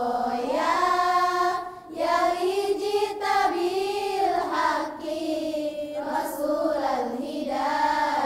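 A girls' choir singing a nasheed together in unison, in long held, gliding notes, with short breaks for breath about two seconds in and near five seconds.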